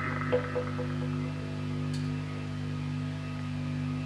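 Electric guitar through a small amp, quietly sustaining low ringing notes, with a few soft plucked notes about half a second in.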